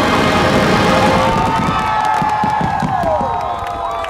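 A large crowd cheering, whooping and whistling at the end of a fireworks finale. The show's music fades out in the first second, and the last low firework bangs and crackles die away.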